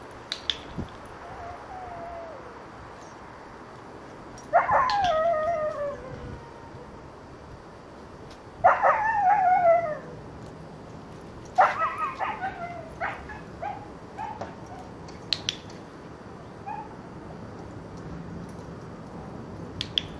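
Young white dog whining in three drawn-out cries, each about a second long and falling in pitch, a few seconds apart, with a few weaker short whines after. A few sharp clicks come near the start and again near the end.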